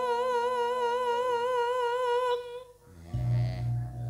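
A Javanese sinden (female gamelan singer) holds one long sung note with steady vibrato through a microphone, ending a little past two seconds in. A low steady hum comes in near the end.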